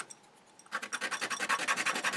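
Nail file rasping in quick back-and-forth strokes across the cut end of a 5 mm wooden dowel, smoothing it down. The strokes stop for about half a second near the start, then pick up again.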